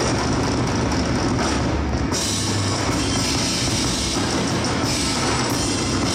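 Drum kit played in a fast, dense live drum solo, strokes running on without a break, with the cymbals growing louder about two seconds in.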